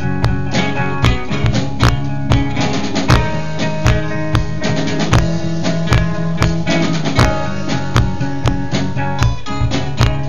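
Live band playing a rock song: strummed acoustic guitar over a drum kit keeping a steady beat of about two strikes a second.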